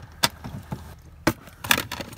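Handling noises as a plastic water bottle is moved about: a few sharp clicks and knocks, the loudest about a second in and again shortly before the end.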